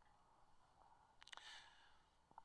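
Near silence: room tone, with a faint breath and a couple of small clicks about a second and a half in.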